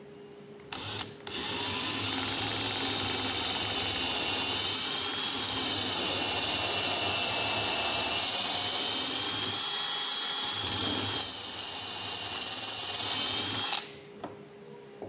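Handheld power drill boring a hole through a wooden spar, the bit guided by a hardwood drill block. It starts with a brief stutter about a second in and then runs steadily, its whine dipping slightly as it loads up. It turns rougher and more uneven near the end and stops just before the close.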